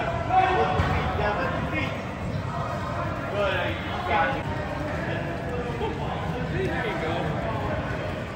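Irregular thuds of soccer balls being dribbled and tapped by many players on artificial turf, over overlapping background voices.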